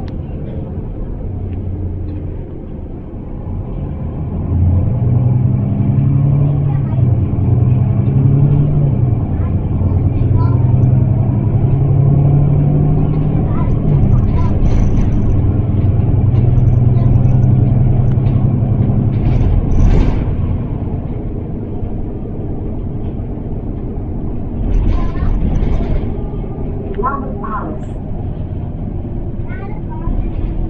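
Interior sound of a Mercedes-Benz Citaro single-deck bus on the move: its diesel engine drones, growing louder about four seconds in and running strongly under load before easing off about two-thirds of the way through. A brief sharp noise comes just as the engine eases off.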